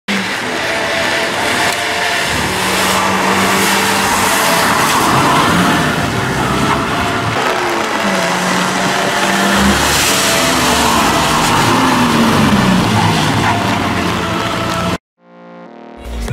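Engines of a Daihatsu Copen and a Toyota 86 being driven hard on a wet circuit, their pitch rising and falling as they rev through the gears, over a steady hiss of tyres throwing spray off standing water. About a second before the end the sound cuts off suddenly, followed by a brief electronic tone.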